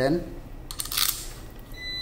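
A brief clatter of handling noise about a second in, as small bolts and parts are picked up during hand assembly of a trimmer handle.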